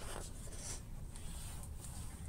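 Faint rustle and scrape of a hand sliding over a book's paper page and turning it.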